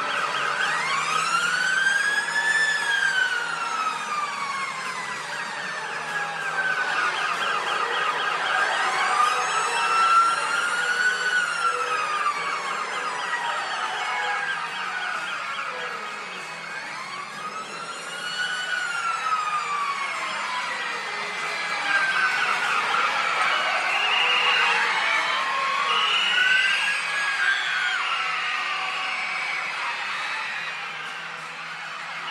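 Siren-like wailing: a pitched tone that slowly rises and falls in long arches, peaking about every eight seconds, four times.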